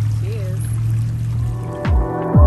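A steady low hum with one short voice sound, then electronic outro music cuts in near the end with deep, falling bass sweeps.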